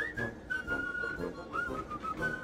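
Background music: a whistled melody of short, changing notes over lower accompanying notes.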